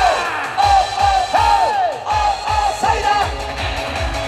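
Amplified live pop-rock band music with a steady kick-drum beat and a male lead vocal sung into a handheld microphone, the melody sliding up and down in pitch.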